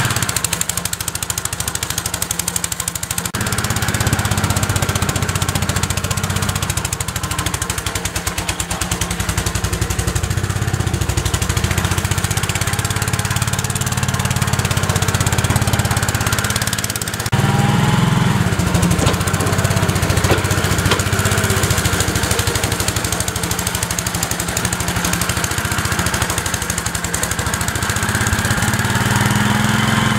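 Small gasoline engine of a walk-behind snowblower running steadily. Its note shifts about 3 seconds in and again about 17 seconds in.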